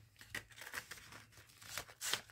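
Faint rustling and crinkling of a paper envelope and its insert being handled, in short scattered crackles.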